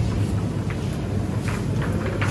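Baby stroller being pushed across a tiled supermarket floor: a steady low rumble with a few faint clicks.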